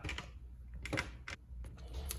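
Handling noise from the hand-held camera being moved and adjusted: a few light, irregular clicks and taps, over faint room tone.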